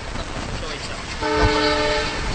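A horn sounds one steady, unwavering note, starting a little over a second in, over a background of noisy hiss.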